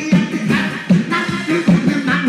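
A man singing through a microphone and PA over amplified backing music with a steady beat.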